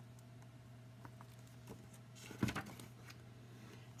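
Quiet room tone with a low steady hum and a few faint ticks, then a short rustle and knock about two and a half seconds in as a hardcover picture book is handled.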